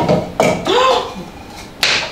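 Kitchen utensils clinking and knocking against an open tin can and a plastic blender jar, with a sharp knock near the end. A short vocal exclamation comes in the middle.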